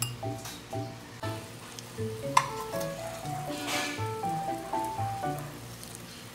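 Background music with a gentle, stepping melody. A single sharp clink, like a utensil striking a ceramic bowl, comes a little over two seconds in, and a brief hiss follows about a second later.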